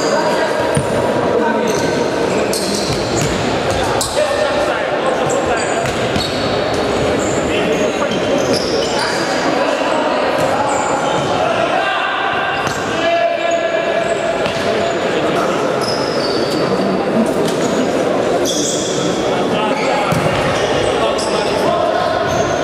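Futsal match in a large, echoing sports hall: players' shouts and calls over the thuds of the ball on the hard hall floor.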